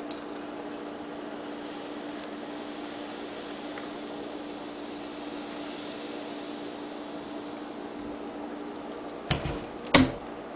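Pepsi poured from a two-litre plastic bottle onto ice in a glass, with a soft fizz, over a steady hum. Near the end come two short knocks, the second louder, as the bottle is lifted upright.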